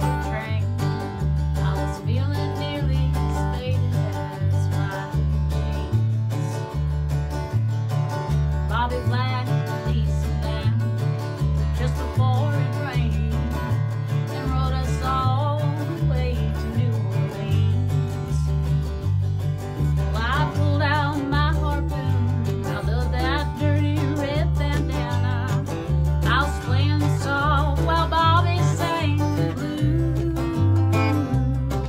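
Live acoustic country song: a strummed acoustic guitar over a steady walking line of low bass notes, with a woman singing the melody in stretches.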